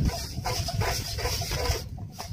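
A dog's voice: several short calls.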